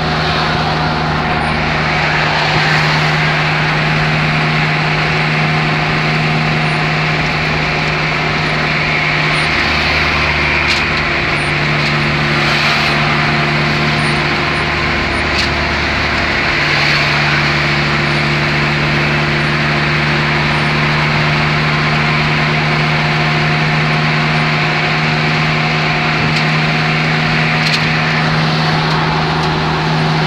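Road noise heard inside a car cruising on a highway: a steady low engine hum under an even rush of tyre and wind noise.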